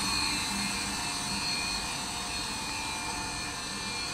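A PE wood-plastic composite decking profile extrusion line running steadily: a continuous machine drone with several steady high-pitched tones over it.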